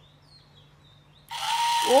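Small electric motor and gearbox of a battery-powered walking elephant toy whirring into life about a second in, as the switch is turned on. It runs now that its dirty battery connector has been cleaned.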